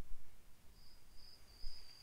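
Faint hiss and low rumble of room or recording noise, with a thin, high, steady whine fading in about a second in.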